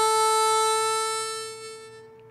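Harmonica holding one long single note that fades out over the second half.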